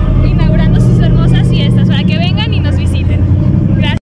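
A car engine running with a steady low hum, with people's voices over it.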